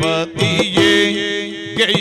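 Yakshagana bhagavata singing, holding a long note in the middle over a steady drone.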